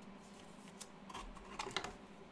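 Faint handling of trading cards: small clicks and rustling as cards are shuffled and slid between the fingers, busiest in the second half.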